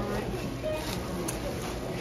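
Faint talking in the background over a steady low hum.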